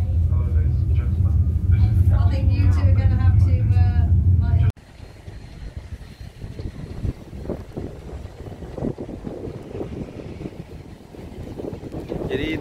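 A loud, steady low rumble with people talking over it. It cuts off abruptly about five seconds in, and a much quieter, uneven outdoor background noise follows.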